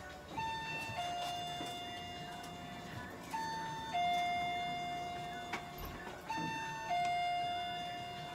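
Electronic two-tone ding-dong chime sounding three times, about three seconds apart: each time a short high note falls to a longer lower note that fades away.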